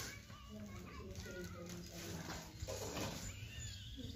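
Faint background voices of people talking, over a steady low rumble.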